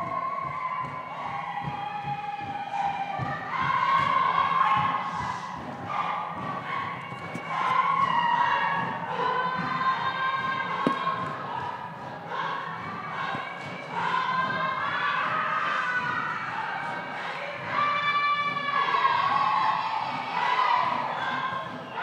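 A group of dancers singing and chanting together, with many heavy thumps underneath.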